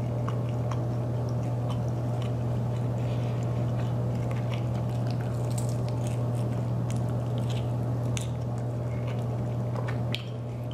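Close-up chewing and biting of a sauced chicken wing, with scattered wet mouth clicks and smacks, over a steady low hum.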